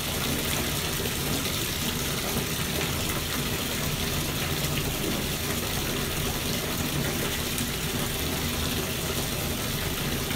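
Bathtub tap running steadily, its stream of water pouring into a tub covered in bubble-bath foam.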